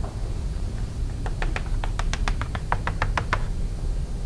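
Chalk tapping against a blackboard while a dashed line is drawn: a quick run of about sixteen short taps, roughly seven a second, starting about a second in and stopping shortly before the end.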